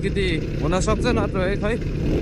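A man talking over the steady low running of a dirt bike ridden slowly, with road and wind noise underneath.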